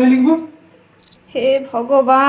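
Cricket chirping: two short, high chirps about half a second apart, between loud bursts of a voice.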